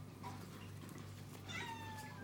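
Domestic cat meowing: a short call near the start, then a longer meow about one and a half seconds in that slides slightly down in pitch.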